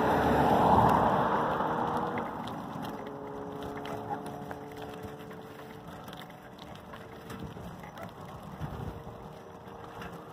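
Wind and road noise of a ride along a street. A louder rush, with traffic close by, fades over the first two seconds into a lower steady rush carrying a faint steady hum of a few pitches.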